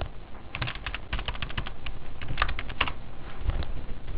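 Typing on a computer keyboard: a quick run of keystrokes from about half a second in to about three seconds in, entering data into a form.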